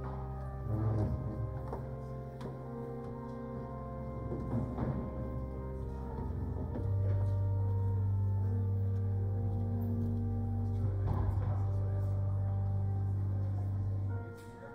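Church organ playing slow, held chords over a sustained bass pedal note. About seven seconds in, a louder, deeper pedal note comes in and holds.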